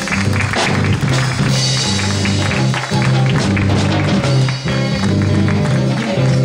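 Church band music with a prominent bass line changing notes under a steady beat, and guitar.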